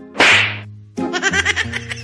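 A comedy sound effect: one sharp whip-like swish about a quarter second in. From about a second in it is followed by quick, high-pitched cartoon-style giggling over background music with a steady bass line.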